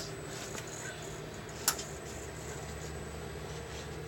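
An RC rock crawler's tyres climbing over a clear plastic body shell onto another RC truck: a single sharp click a little before halfway, over a steady low hum.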